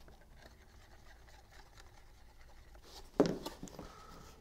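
Quiet handling of a cardstock papercraft piece while tacky glue is squeezed onto a paper tab, then one short, sharp rustle-and-knock about three seconds in, followed by a few small ticks.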